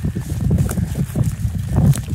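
Wind buffeting a phone's microphone: a loud, uneven low rumble.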